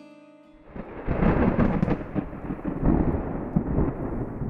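Thunder rumbling in a thunderstorm, a deep rolling rumble that swells in about a second in and surges several times. Soft background music fades out just before it.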